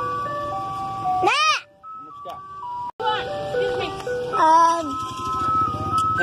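Ice cream truck's chime music playing a simple melody of plain, steady notes. It breaks off briefly about two seconds in, then carries on.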